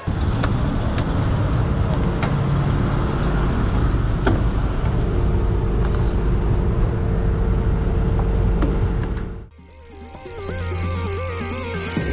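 On-bike camera sound of a racing bicycle rolling slowly over rough tarmac: loud, steady rumble of wind and road on the camera mount, a few sharp clicks and a steady hum. About nine and a half seconds in it cuts off suddenly and gives way to a short electronic logo sting with wavering tones.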